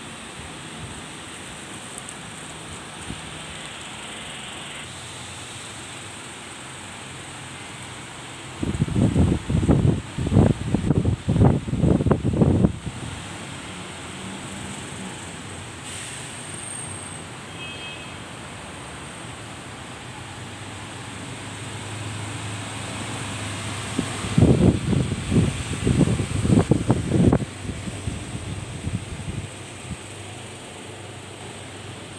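Steady hum of bus and traffic noise, broken twice by a few seconds of gusting wind buffeting the phone's microphone: once about a third of the way in and again near the end.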